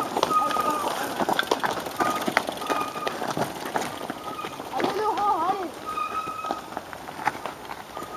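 Cyclo-cross bikes ridden past on a leaf-covered dirt track, with many short clicks and crackles of tyres, chains and dry leaves and short high squeaks recurring throughout. A spectator shouts "extérieur" about five seconds in.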